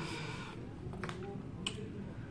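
Two short, sharp clicks over quiet room tone, about a second in and a slightly louder one later, during a pause in speech.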